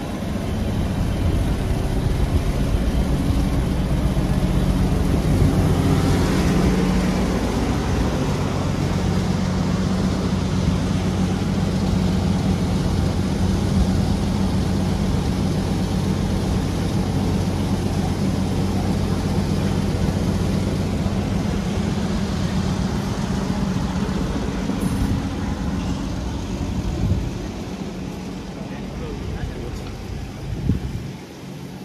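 A truck's engine idling: a steady low hum with a few fixed pitches, easing off near the end.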